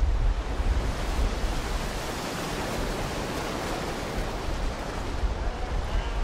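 Surf washing on a beach, an even rush of water noise, with heavy wind buffeting the microphone as a constant low rumble.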